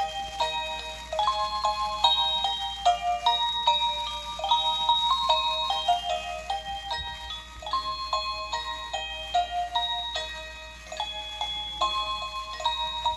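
A musical Baby Yoda snow globe playing a tune in short, bright, chime-like notes, one after another at an even pace.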